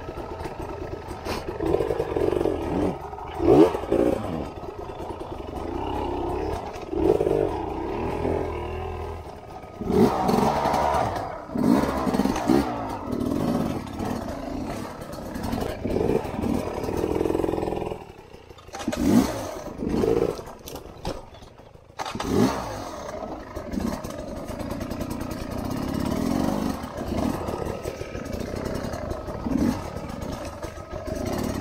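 Enduro dirt bike engines revving in short bursts, the pitch rising and falling every second or two as the bikes are clutched and throttled at walking pace over roots, with mechanical clatter from the bikes. The engine note drops back twice in the second half.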